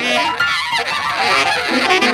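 Free-jazz improvisation by a saxophone and piano duo, the reed playing fast, wavering runs in a dense tangle of notes.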